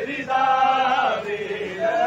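Male voices chanting a noha, a Shia lament. One line is held for about a second, and a new line begins near the end.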